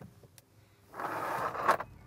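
A brief scraping, rushing noise of just under a second, starting about a second in and ending in a sharp knock.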